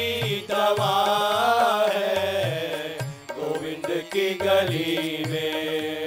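Devotional Hindu bhajan performed live: a voice sings a wavering melody over sustained harmonium notes.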